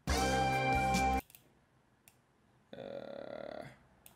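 Two short pitched sounds played back from music samples in FL Studio: the first about a second long and cut off abruptly, the second fainter and about a second long, starting near the end.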